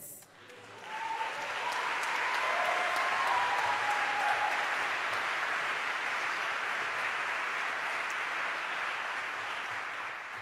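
An audience applauding, building up about a second in and holding steady before fading near the end, with a few cheers over it in the first seconds.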